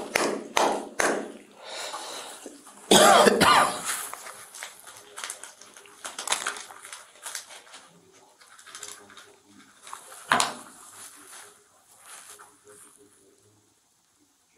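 Crinkling and clicking of a clear plastic packet being unwrapped and handled close to the microphone. The loudest rustle comes about three seconds in, and the sounds thin out and grow fainter toward the end, with one more sharp crackle near the ten-second mark.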